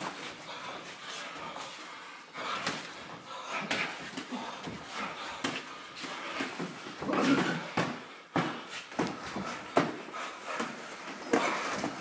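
Sparring boxers' gloves landing on gloves, arms and headguards in irregular thuds and slaps, a few to several a second in flurries, with sharp breaths as the punches are thrown.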